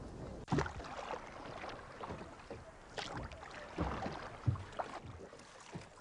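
Water lapping against a small boat, with a few short knocks and splashes against the hull and light wind on the microphone.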